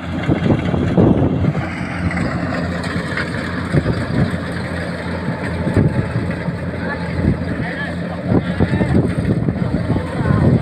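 Kubota combine harvesters running steadily in the distance, mixed with wind on the microphone, rustling and footsteps in the cut rice straw, and voices of people in the field.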